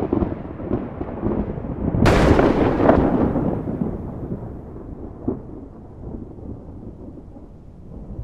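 Cinematic thunder-like sound effect: a deep rumble, then a sharp crack about two seconds in, trailing off into a long fading rumble.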